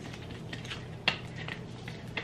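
Faint handling noises of small objects: a few light clicks and rustles, with one sharper click about a second in.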